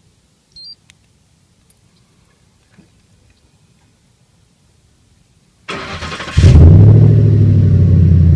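A short beep about half a second in. About six seconds in, the 2004 Ford F-150's 5.4-litre V8 starts: a brief crank, then the engine catches and idles loudly and steadily through its MagnaFlow exhaust, heard at the tailpipe.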